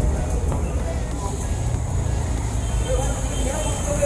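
Street noise outdoors: a steady low rumble of traffic or an idling car, with indistinct voices over it.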